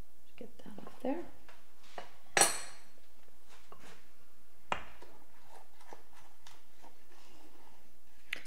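Kitchen utensils scraping and knocking against mixing bowls, with one sharp ringing clink about two and a half seconds in and a smaller click near five seconds. A brief vocal sound comes about a second in.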